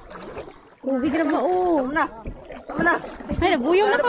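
Several voices chattering and calling out in a small paddled boat, with the water sound of the paddle underneath; the voices start loudly about a second in and dominate.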